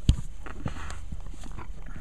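Handling noise from a large book being moved close to the camera: one sharp thump right at the start, then faint scattered taps and rubbing over a low steady hum.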